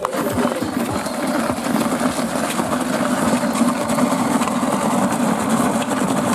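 Rubber car tyre dragged on a fire hose, scraping and grinding over wet gravel and asphalt in a continuous gritty rumble that starts abruptly.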